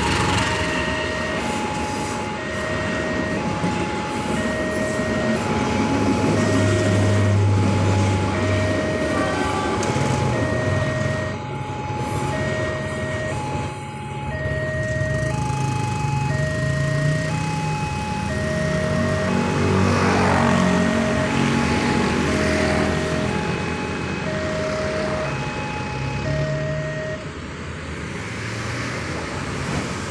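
Level-crossing warning alarm sounding a repeating two-tone chime, a lower and a higher tone alternating about once a second, until it stops near the end. Under it there is a steady rumble of vehicle engines, with motorcycles revving and pulling away about two-thirds of the way through.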